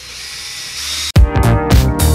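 Ryobi cordless drill on its highest setting spinning a 3,000-grit sanding pad against a plastic headlight lens: a steady whirring hiss with a faint high whine. About a second in, loud background music with a beat cuts in abruptly and covers it.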